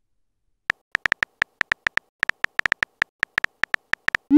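Simulated phone-keyboard typing clicks from a texting app, one short click per keystroke, about twenty at an uneven typing pace, starting under a second in.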